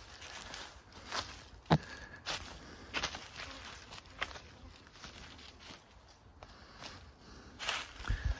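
Footsteps on dry bamboo leaf litter, quiet and irregular, with one louder snap a little under two seconds in.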